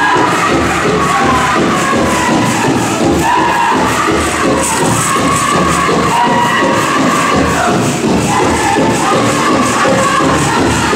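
Powwow drum group singing in high voices over a steady drumbeat of about two beats a second, with the metal cones of jingle dresses shaking along.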